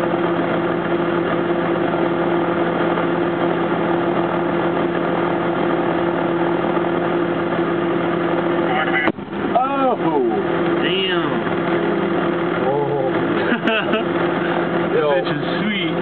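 Military vehicle engine running steadily; about nine seconds in, a single sharp blast as a large IED detonates, the audio briefly dropping out as it hits. Excited shouting follows the blast.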